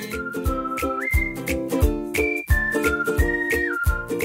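Upbeat intro jingle: a whistled melody stepping between a few notes, over chords and a steady bass beat.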